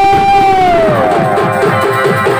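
Live Chhau dance music: a wind instrument holds one long note that bends down about halfway through, over fast, steady drumming.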